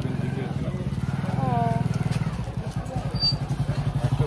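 A small engine running close by: a steady, low, pulsing hum that grows louder near the end, with another person's voice over it.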